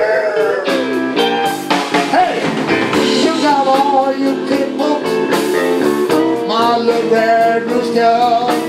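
A blues band playing live: electric bass, guitar and drums keeping a steady groove under a bending melody line.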